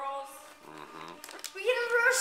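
Only people talking: voices in a small room, with a child's higher voice getting louder near the end.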